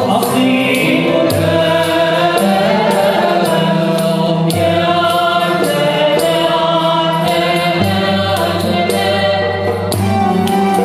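Live Andalusian ensemble music: violins bowed upright on the knee, cello and lute playing a melody together, with group singing and a light, steady percussion beat.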